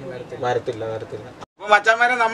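Men talking, with a brief cut to silence about one and a half seconds in, after which a louder voice starts.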